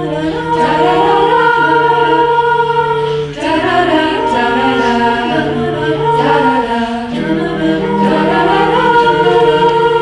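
Mixed-voice a cappella group singing: a solo voice over sustained backing chords and a steady low bass line, with a brief dip in loudness a little over three seconds in.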